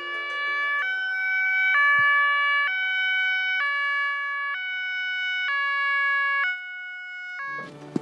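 Ambulance two-tone siren, a high and a low note alternating about once a second, growing louder over the first couple of seconds as it approaches. It drops in level near the end.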